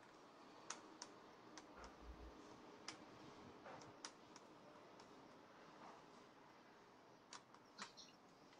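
Near silence with faint, scattered clicks and ticks of a small screwdriver working the battery-compartment screw on a plastic toy robot's body, about a dozen in all, with a few close together near the end.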